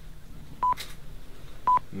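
Camera self-timer beeping: two short, high single-pitch beeps about a second apart, counting down to the shot.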